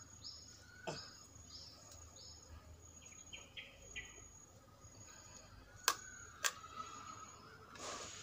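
A small bird chirping in the background, a short high note repeating about twice a second, then a few lower chirps. About six seconds in come two sharp knocks, a second apart, as the coral rock is set down on the clay pot.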